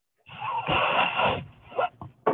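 A man's loud wordless vocal noise lasting about a second, followed by two short breathy sounds near the end, heard through a video call's narrow audio.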